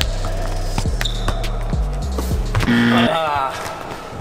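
Background music with a steady bass line under the thuds of a football being juggled and bouncing on a wooden hall floor. The music cuts off a little under three seconds in, and a voice calls out.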